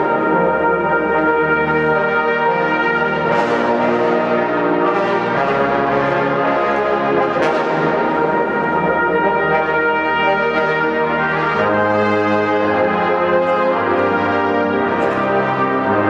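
Brass ensemble of trumpets, trombones and tuba playing slow, held full chords that change every few seconds, in a large church.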